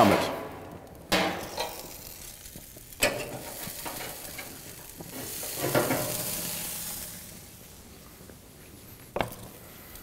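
Thick bone-in tomahawk steak sizzling on a gas grill's grate as it is lifted off with metal tongs, with a few sharp clicks of metal on metal. The sizzle swells about halfway through, and there is another sharp knock near the end.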